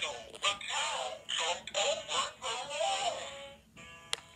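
A battery-powered children's nursery-rhyme book toy playing its recorded voice singing through its small speaker. It is running on weak batteries, which the owner says make it sound possessed.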